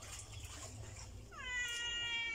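A single drawn-out, high-pitched meow-like call past halfway, dipping slightly at the start and then holding one steady note for about a second, over a low steady hum.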